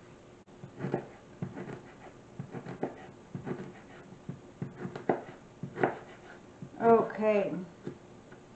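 Chef's knife slicing a pear and tapping down on a plastic cutting board, a row of irregular light knocks about once or twice a second. A short voice-like sound comes near the end.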